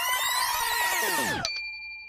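Edited-in sound effect of many overlapping tones sweeping up and then down. It cuts off abruptly about one and a half seconds in, leaving a short steady high tone.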